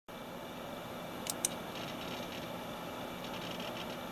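Faint steady hiss, with two brief sharp clicks close together about a second and a half in.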